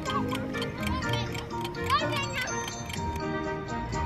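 Background music with a ticking-clock sound effect laid over it, the regular ticks thinning out near the end. A child's voice rises briefly about two seconds in.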